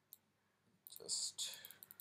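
A single sharp click just after the start, then quiet, then from about halfway a breathy, hissy mouth and breath noise close to the microphone with a few small clicks, as the narrator draws breath to speak.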